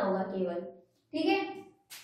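A woman lecturing in Hindi, saying a few words with a short pause between them. A single sharp click comes right at the end.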